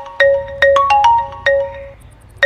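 Mobile phone ringing with a marimba-style ringtone: a quick phrase of struck, ringing notes that repeats.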